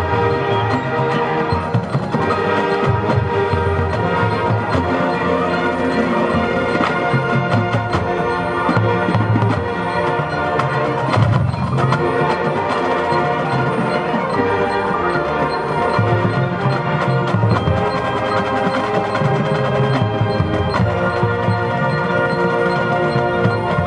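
Marching band playing a loud, continuous passage of its field-show music, with brass chords over percussion.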